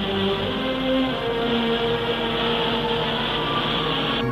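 Cartoon rocket-engine sound effect: a steady rushing noise of the moon rocket firing its directional thrust, over orchestral background music with long held notes.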